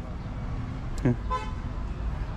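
A short horn toot about a second and a half in, over a steady low background rumble, with a brief laugh just before it.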